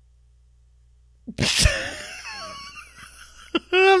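A man bursting out laughing about a second in, a sudden wheezy, breathy laugh that trails off over the next two seconds.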